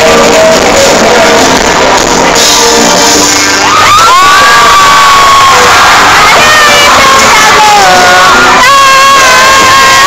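Live pop concert music recorded on a phone, very loud and distorted, with a screaming crowd. From about four seconds in, a high voice close to the microphone holds long, steady notes that slide at their starts and ends.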